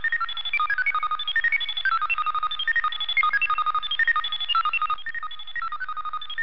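Sci-fi machine sound effect: rapid electronic bleeps hopping among a few high pitches, several a second, like a robot or computer chattering.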